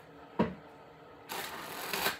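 A deck of tarot cards being shuffled on a desk. A single short click comes about half a second in, then a papery riffle of the cards starts past the midpoint and runs on to the end.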